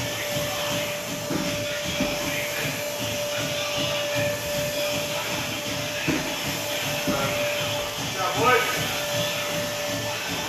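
Steady whooshing hum of a gym fan with a constant whine running under it, broken by a few dull thumps. A short vocal grunt comes near the end.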